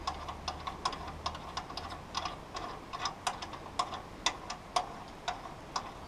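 Light, irregular ticks, about three a second: water dripping from a sawmill's blade-lube line with its valve opened.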